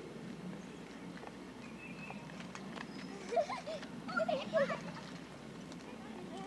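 Distant children's voices outdoors: a few short, high, wordless calls about three to five seconds in, over faint background noise.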